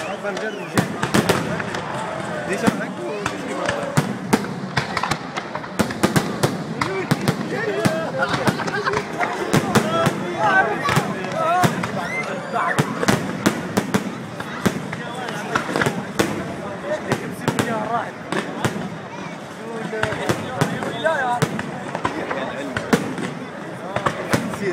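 Fireworks going off in quick succession: a steady run of sharp bangs and crackles that keeps going throughout, with people's voices close by between the reports.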